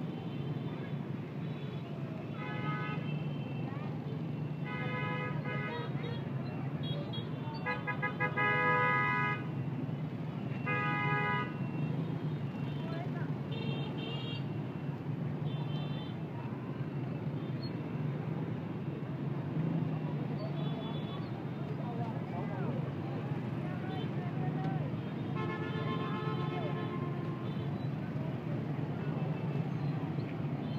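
Dense motorbike traffic: the steady hum of many small engines, with horns tooting again and again. The longest and loudest honk comes about eight seconds in, and another run of honks comes near the end.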